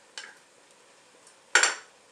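A single sharp clink of kitchenware about one and a half seconds in, ringing briefly, with a faint tap near the start.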